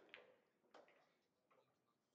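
Faint, sharp clicks of pool balls during a shot: the cue tip striking the cue ball and balls knocking together, two clicks in the first second.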